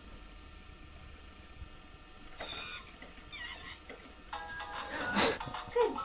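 Fisher-Price Jumperoo baby jumper's electronic music and animal sound effects, set off by the baby's bouncing: a few chirpy tones a little before halfway, then a stepped electronic melody with a brief louder sound near the end.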